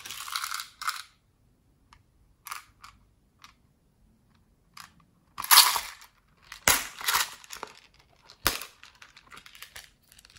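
Hard plastic shell-shaped storage cases handled and pried open by hand: bursts of rustling and scraping plastic, with a sharp click about eight and a half seconds in.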